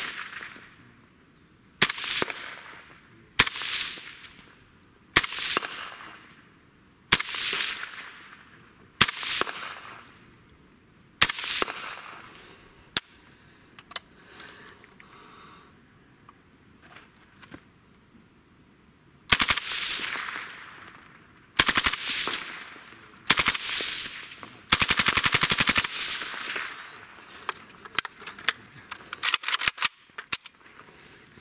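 Suppressed AK-74 rifle (5.45×39 mm) firing single shots about every two seconds, each trailing off in an echo. After a pause of several seconds come three more shots and then a rapid burst of about a second.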